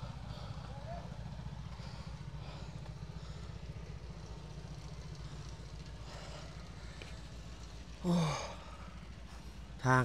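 A steady low rumble with a fast, even pulse runs throughout. About eight seconds in, a man gives a short sighing 'oh' that falls in pitch.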